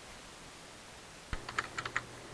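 A quick run of about six keystrokes on a computer keyboard, starting a little past halfway through.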